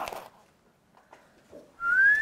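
Mostly near silence; near the end a single clear whistled note begins and rises in pitch.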